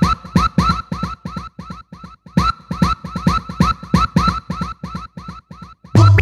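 UK garage club track from a DJ mix in a stripped-down stretch: a quick stuttering run of short, clipped synth stabs and drum-machine hits, about five a second, with no bassline. Heavy bass drops back in at the very end.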